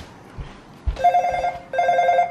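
Video door-entry intercom panel ringing with an incoming call from a visitor at the door: two short electronic ring bursts, each about half a second long, starting about a second in.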